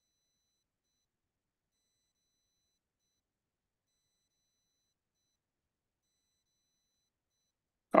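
Near silence, with only a very faint, on-and-off high whine.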